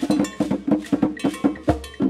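Afro-Cuban rumba percussion: hand-played conga drums with a cowbell pattern over them, a quick, steady stream of strokes. A deeper, heavier drum stroke lands near the end.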